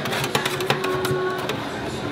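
Two metal spatulas tapping and scraping on a frosted steel cold plate as ice cream is chopped and spread across it, an irregular run of sharp clicks and scrapes.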